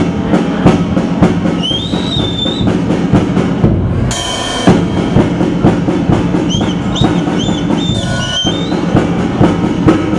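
A drum kit played by a five-year-old drummer: a steady rhythm of hits, about three to four a second, with a cymbal-like crash ringing for half a second about four seconds in.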